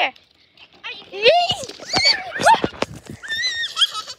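Children's high-pitched squeals and cries during play, several short rising and falling cries starting about a second in, with a few sharp clicks among them.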